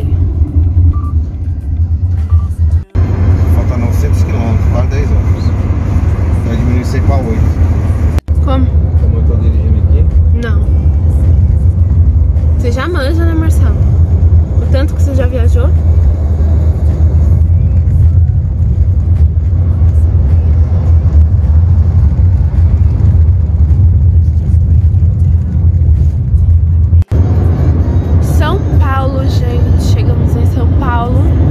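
Steady low road and engine rumble inside a moving car's cabin, with people's voices over it. The sound drops out briefly three times.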